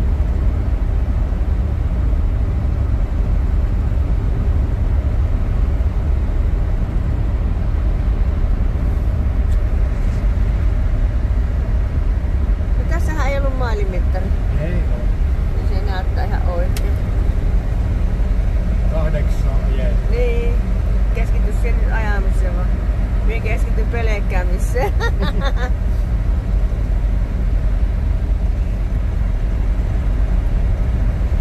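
A Rambler American being driven at steady road speed, heard from inside the cabin: a constant low rumble of engine and tyre noise.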